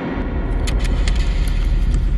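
A deep rumble starts suddenly just after the start, joined about half a second in by a quick run of sharp clicks or rattles.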